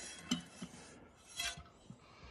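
A few faint clinks and rustles from a stainless steel colander handled among loquat leaves. The loudest comes about a second and a half in.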